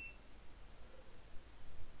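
Faint background hiss between words, with one short high beep right at the start.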